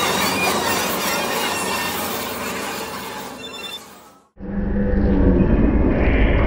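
Layered sound-collage soundtrack: a dense, noisy mix with short squealing glides fades out over about four seconds. After a brief silence, a duller recording with a heavy low rumble cuts in abruptly.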